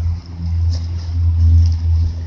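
Wind buffeting the microphone: a loud, low rumble that swells and dips.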